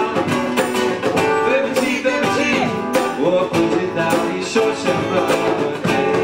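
A band playing live acoustic music: strummed acoustic guitar with regular strokes and a singing voice over it.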